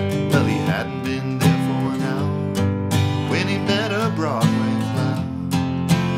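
Taylor steel-string acoustic guitar played in a steady, rhythmic strummed and picked accompaniment, with a man singing over it.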